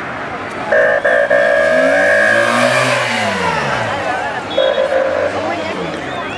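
A car horn held for about two seconds as a race convoy car drives past, then a shorter second blast, over the chatter of a roadside crowd.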